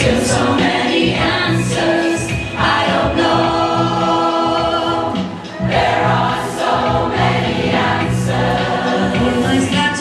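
A large choir, mostly women's voices, singing together, with a brief breath between phrases about halfway through.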